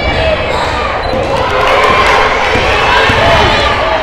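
Basketball dribbled on a hardwood gym floor, with crowd voices and shouts from the stands.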